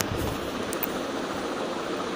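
Steady, even background hiss with no distinct events.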